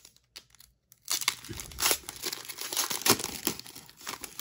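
Foil wrapper of a 2021 Panini Classics football card pack being torn open and crinkled by hand, a burst of crackling that starts about a second in and keeps going.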